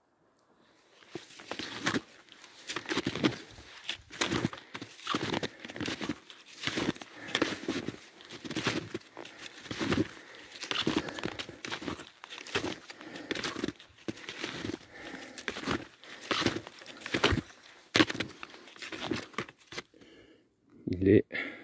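Snowshoe steps crunching in deep snow, about thirty centimetres of it, in a steady walking rhythm of about one and a half steps a second, starting about a second in.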